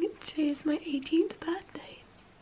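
A young woman's voice in short, soft syllables close to a whisper.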